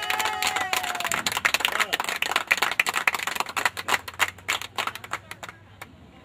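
A small crowd clapping and cheering, with a drawn-out voice cheer in the first second; the clapping thins out and stops near the end.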